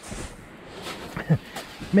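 A man's brief muttered sounds and breaths between sentences over a steady hiss of wind and surf, with speech starting again at the very end.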